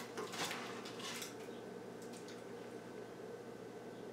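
A spatula scraping and sliding under a baked pizza crust on a baking sheet, a few faint strokes in the first second or so. After that, quiet room tone with a faint steady hum.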